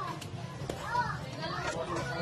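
Children's voices, high-pitched chatter and calls with other voices in the background.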